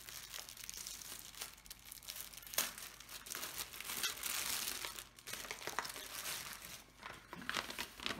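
Crinkling and rustling of a clear plastic bag of small diamond-painting drill packets being handled, in irregular bursts with small clicks and a busier stretch around the middle.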